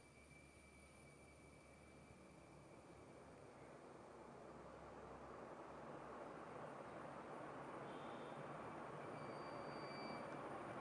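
BLDC ceiling fan running, the faint airy whoosh of its spinning blades growing gradually louder.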